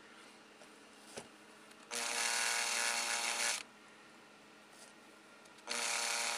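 Small electric motor spinning a fly-tying mandrel in two short runs with a steady hum, the first about two seconds in and the second near the end. A single faint click comes about a second in.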